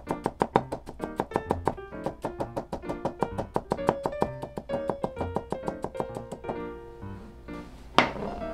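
Chef's knife chopping ginger into thin strips on a plastic cutting board: quick, even taps about six a second, which stop about a second and a half before the end. Background music plays under it.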